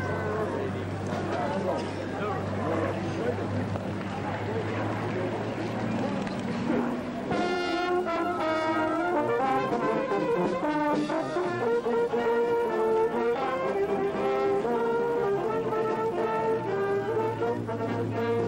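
A propeller aircraft's steady engine drone with outdoor noise. About seven seconds in, brass band music starts and carries on to the end.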